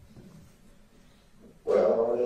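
Wiretap phone-call recording played back through the courtroom sound system: faint line hiss, then near the end a sudden, loud, drawn-out sound with a steady pitch.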